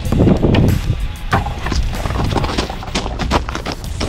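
A parkour runner's footsteps and landing thuds on concrete and wooden blocks, a run of quick knocks that bunch together in the second half, over a steady low rumble of wind on the microphone.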